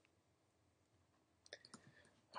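Near silence, then a few faint, quick clicks of computer keys or mouse buttons near the end.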